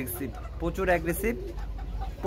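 Birds calling, mixed with a man's voice, over a steady low hum.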